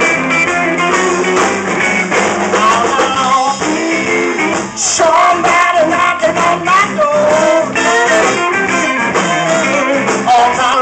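Live blues band playing, led by a semi-hollow electric guitar over electric bass, with a man singing lead, more strongly in the second half.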